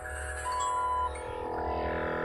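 GSPSCN 12-volt portable tyre-inflator compressor running with a steady hum while inflating a tyre, drawing only about 6 to 7 amps from the vehicle's accessory socket. A single electronic beep sounds about half a second in and lasts about half a second.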